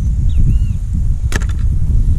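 Steady low rumble of wind buffeting an action-camera microphone, with one sharp click about a second and a half in and a couple of faint high chirps before it.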